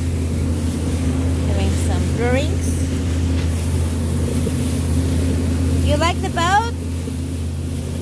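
Pontoon boat's four-stroke outboard motor running steadily under way, with the rush of wake and wind. Short rising voice-like calls cut in about two seconds in and again about six seconds in.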